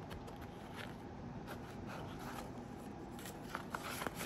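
Faint rustling of paper banknotes being slipped into a plastic zip pouch, with a few small clicks near the end as the pouch's zipper is handled.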